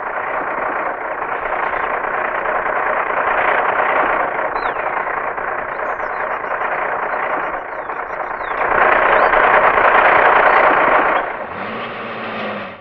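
Massey Ferguson farm tractor's diesel engine running steadily, growing louder for a couple of seconds about nine seconds in, with a few thin high chirps over it.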